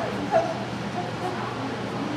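A dog gives one short bark about a third of a second in, over a background murmur of voices.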